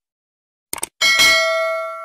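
Subscribe-animation sound effect: a quick double mouse click, then about a second in a notification-bell ding that rings on and slowly fades.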